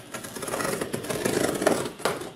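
Scissor blade drawn along a cardboard box's taped seam, slitting the packing tape with one continuous scrape that stops sharply after nearly two seconds.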